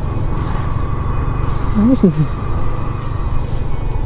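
Yamaha Sniper 150 motorcycle under way, its engine running under a steady rush of wind noise on the microphone. A short vocal sound rises and falls about two seconds in.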